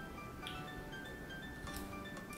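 Quiet background music: light melodic notes.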